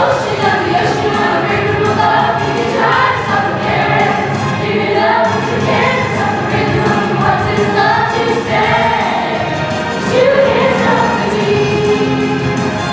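Young musical-theatre cast singing an ensemble number together over musical accompaniment, continuous and loud.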